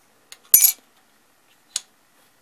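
Sharp metallic clinks of a metal dog tag and a thin pin tool handled against a plastic fixture and aluminium table: a faint click, then a loud one with a short ring about half a second in, and a smaller click near the end.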